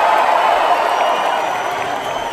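Large concert crowd cheering and applauding in a big hall, a steady wash of clapping and voices that eases slightly toward the end.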